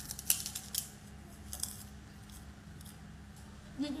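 Crunching of crispy flour-coated fried chicken being bitten and chewed: a few sharp crackles in the first couple of seconds, then quieter.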